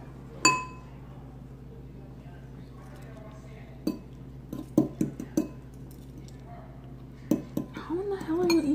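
Metal eating utensils clinking and tapping against a bowl during a meal of noodles: one bright, ringing clink about half a second in, then a scatter of shorter taps from about four seconds on.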